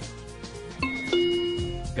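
A two-note electronic chime, ding-dong, about a second in, over quiet background music.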